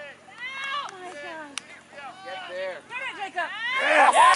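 Players and sideline spectators shouting during a soccer match, the calls growing louder toward the end.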